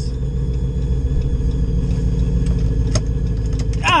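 Supercharged 5.7 Hemi V8 running at low speed, heard from inside the pickup's cab as a steady low rumble.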